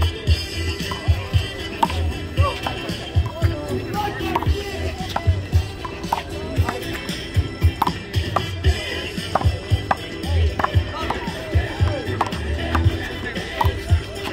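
Music with a steady bass beat plays throughout, over sharp smacks of a handball being struck by hand and hitting the concrete wall during a doubles rally.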